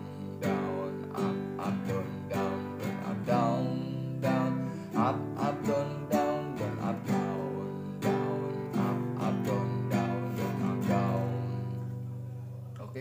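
Nylon-string classical guitar strummed in a steady down-down-up-up-down-down pattern through the chords C, D, G and G7. The last chord rings out and fades near the end.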